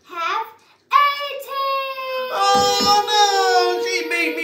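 A child's voice singing a long held note that falls slowly in pitch, with a second voice joining on a higher held note about halfway through; a short spoken syllable comes first.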